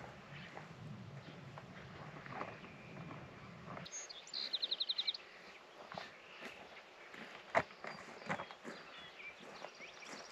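Quiet open-air scene. A low steady hum stops suddenly about four seconds in, just as a bird gives a rapid trill of about eight short high notes, and a few soft knocks from footsteps on loose soil follow near the end.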